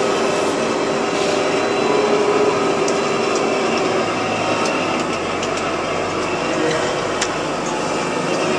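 Front-end loader's diesel engine running steadily as the machine drives, heard from the cab, with a steady whine over it for the first half and a lower hum coming in about halfway through.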